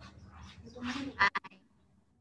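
A brief voice-like sound, then a quick run of three or four sharp clicks about halfway through, typical of a computer mouse being clicked close to the microphone.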